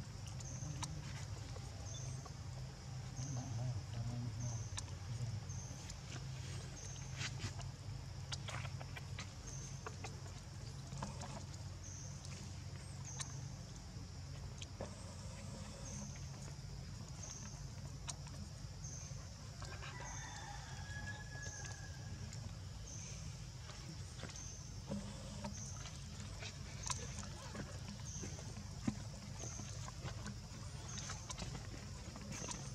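Outdoor ambience: a high chirp repeating about once a second, a low steady hum, and scattered light clicks and taps, with a short pitched call about two-thirds of the way through.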